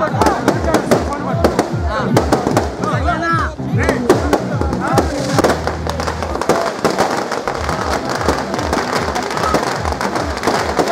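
A string of firecrackers crackling in rapid, irregular bangs, over crowd voices and loud music with a steady heavy beat.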